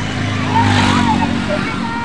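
A motor vehicle passing close by on the road: its engine hum and road noise swell to a peak about a second in, then ease off. Children's voices chatter over it.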